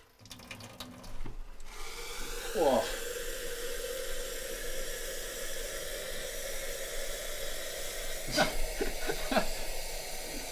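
Boiling-water kitchen tap running hot water into a cafetière: a steady rushing hiss that starts about two seconds in.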